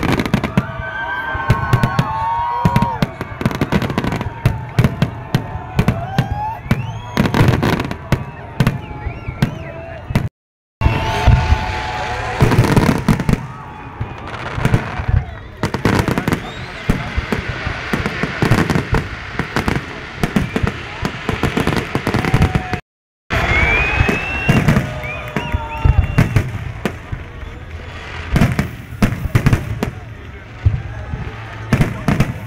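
Large aerial fireworks display: a dense, continuous barrage of shell bursts, bangs and crackles, with voices in the watching crowd underneath. The sound cuts out briefly twice, about a third and three quarters of the way through.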